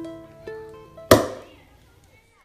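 Acoustic guitar picking a few single notes, then one loud, sharp percussive hit about a second in that rings down and ends the song.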